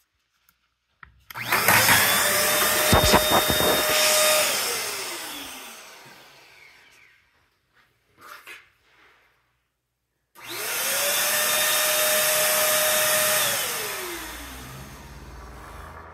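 Timer-switched electric pump pushing table tennis balls up a PVC return pipe. Its motor starts about a second in with a whooshing whine, holds steady for about three seconds and winds down, then starts again and runs the same way about ten seconds in. A quick cluster of knocks comes during the first run.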